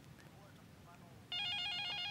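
Electronic telephone ring: a rapid warbling trill of alternating high tones starting about two-thirds of the way in, after a short near-quiet stretch.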